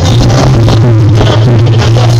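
Live cumbia band playing loud through the stage PA: keyboards and Latin percussion over a heavy bass line.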